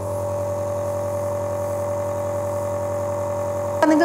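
Compressor nebulizer's electric air compressor running with a steady hum. It cuts off abruptly near the end.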